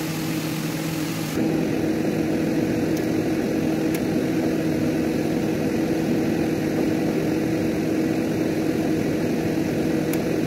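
A steady machine-like hum with a low drone, stepping up in level about a second and a half in and then holding even.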